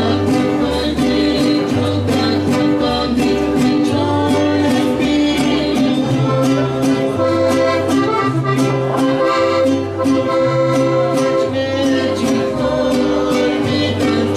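Live string-band music: a large bass guitar plays alternating low bass notes about twice a second under strummed guitars, with long held melody notes above them.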